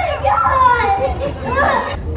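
High-pitched voices calling out, their pitch rising and falling, with no words that can be made out.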